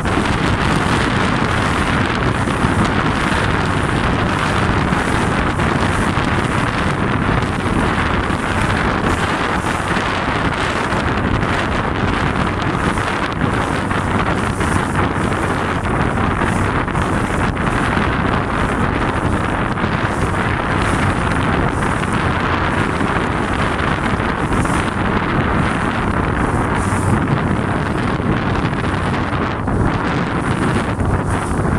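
Steady, loud wind noise buffeting the microphone aboard a boat on choppy open water, with the boat's own running and water noise underneath.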